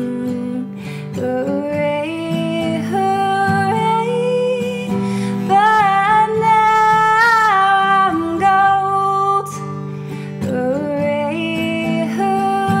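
Woman singing with acoustic guitar accompaniment, her voice moving between long held notes that waver with vibrato.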